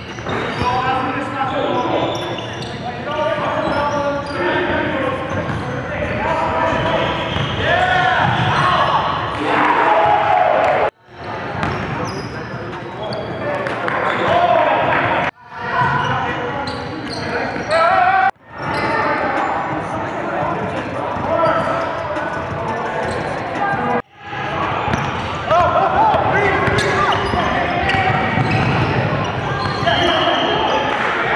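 Live basketball game sound in a gymnasium: a ball dribbled on the hardwood and players' indistinct shouts and chatter, echoing in the hall. The sound drops out suddenly and comes back four times.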